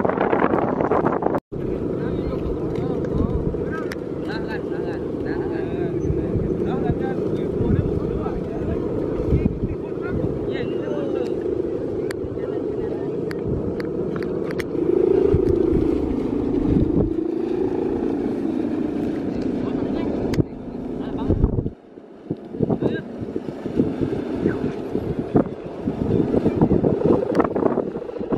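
Steady drone of a Balinese kite's bow hummer (guangan) vibrating in the wind, its pitch wavering up and down in the middle, with wind buffeting the microphone.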